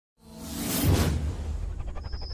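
Whoosh sound effect of an animated intro, swelling up to a peak about a second in and then fading, over a low, steady bass drone of intro music, with a quick fluttering rattle near the end.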